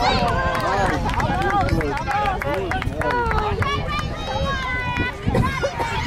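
Several people's voices calling and shouting over one another, high-pitched and overlapping, with a steady low rumble underneath.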